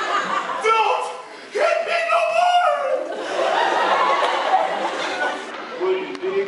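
People's voices talking, with chuckling and laughter.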